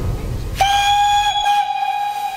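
A steam locomotive's whistle sounds one long, steady note starting about half a second in, over a low rumble that dies away shortly after.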